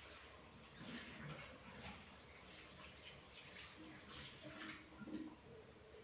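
Faint kitchen work sounds: irregular light clicks and knocks of utensils, with a little water splashing, as at a sink.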